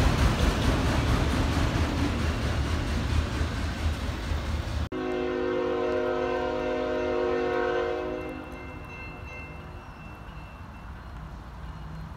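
A freight train of autorack cars rolling past with a steady low rumble of wheels on rail, cut off abruptly about five seconds in. Then a CSX freight locomotive's horn sounds one long chord for about three seconds and fades away.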